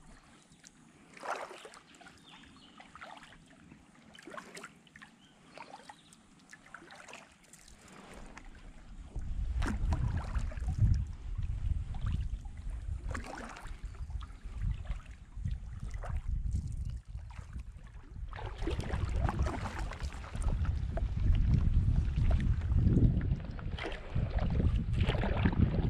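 Kayak paddle dipping and dripping water in short, regular strokes, then wind buffeting the microphone in gusts from about nine seconds in, heavier near the end.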